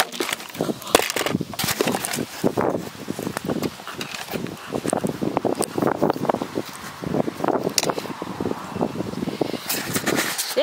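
Close-up handling noise from a camera being knocked about and tumbling: rustling and scraping with irregular sharp knocks, the loudest about a second in, mixed with indistinct voice sounds.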